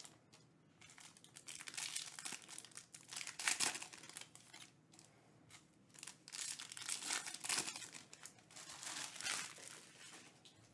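Foil wrapper of a Bowman's Best baseball card pack crinkling and tearing as it is opened by hand, in several irregular bursts with short quieter gaps.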